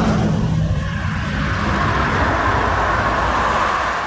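A car engine running loudly and steadily, with a noisy hiss over a low hum, easing off slightly near the end.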